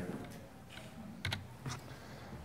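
A few soft, short clicks over quiet room tone.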